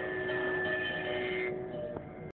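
Sarod strings ringing in sustained notes, several steady tones held together, the brighter upper part fading out about one and a half seconds in.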